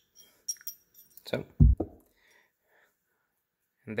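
Steel transmission gear and its splined lock retainer clinking against each other and the splined shaft as they are slid off: a few light metallic clinks with a short ring in the first second, then a low thump about a second and a half in.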